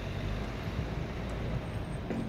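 Steady low rumble of outdoor street noise: road traffic with wind buffeting the microphone.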